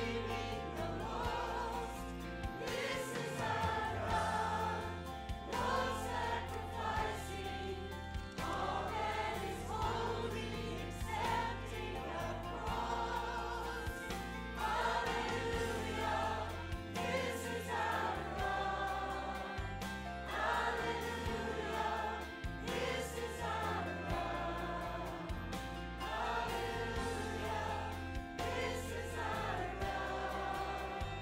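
Mixed church choir of men's and women's voices singing in phrases over an accompaniment that holds sustained low notes.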